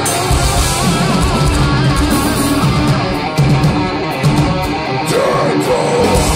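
Thrash metal band playing live through a festival PA: distorted electric guitars, bass and drums, with held notes wavering in pitch over the riffing.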